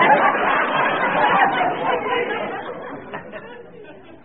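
Studio audience laughing after a punchline, loudest at the start and dying away over the last second or so. Heard on an old recording with a narrow frequency range.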